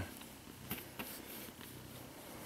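A cat purring faintly while being stroked, with a couple of soft clicks about a second in.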